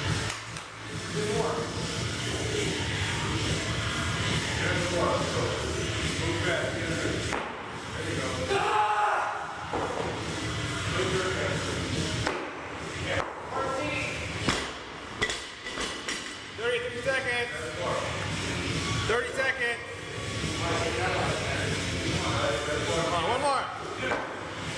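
Background music and voices in a large gym, with a loaded bumper-plate barbell thudding on the floor several times as reps are done.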